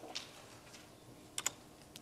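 Two quick clicks of computer keys close together, about a second and a half in, over quiet room tone.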